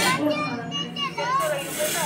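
Only voices: people talking and calling out to one another, with no other sound standing out.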